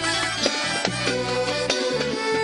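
Instrumental Sudanese band music: an accordion holding a sustained melody over quick hand-drum (bongo) beats.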